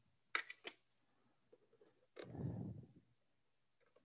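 Faint plastic clicks and handling noise as an antenna connector is worked into a port on the back of a Telus Smart Hub MF279: three or four quick clicks about half a second in, then a duller rustle lasting about a second.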